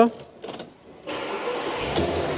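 A 2003 Audi A8's 3.7-litre V8 starting: a second of quiet with a few soft clicks, then the engine catches about a second in and runs on steadily, swelling briefly near the end.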